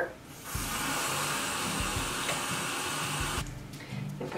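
Bathroom sink faucet running water into a jar of castile-soap shampoo mixture, a steady hiss that starts about half a second in and shuts off shortly before the end.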